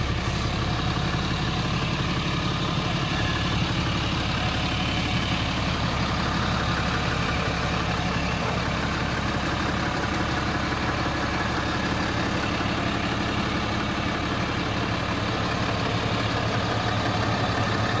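A truck engine idling steadily, an even low hum with no change in speed.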